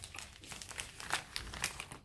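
Chocolate bar wrappers and foil crinkling and crackling as a bar is handled and slid out of its wrapper, a quick run of sharp crackles with the loudest ones around the middle.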